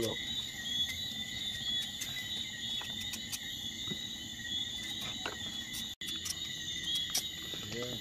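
A chorus of night insects calling steadily in several high pitches, with light clicks and scrapes of knives peeling yams. The sound cuts out for an instant about three-quarters of the way through.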